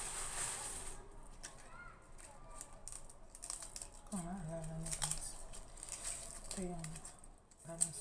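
Hands peeling a garlic clove, the papery skin rustling and crackling with small clicks, loudest in a rustle during the first second. A voice sounds briefly twice in the second half.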